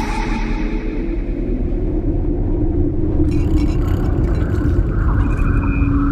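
Deep, steady rumbling sound effect with a held low hum; a hiss of higher noise joins about three seconds in.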